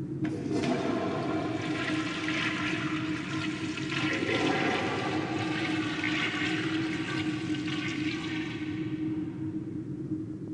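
Water rushing steadily with a low steady tone underneath, surging about four seconds in.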